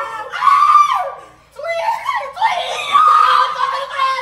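Several people screaming and shrieking in loud, high-pitched yells mixed with laughter, in two bursts with a short lull about a second and a half in.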